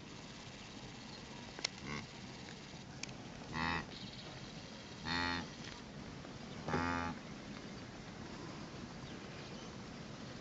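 Blue wildebeest calling: three short low calls about a second and a half apart, with a fainter one a couple of seconds before them.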